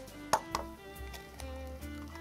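Background music with soft held notes, and two sharp taps about a third and half a second in: an egg being cracked on the rim of a ceramic bowl.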